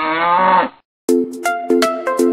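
A single cow moo, rising in pitch, that ends just under a second in. After a brief gap, electronic music with a steady beat begins.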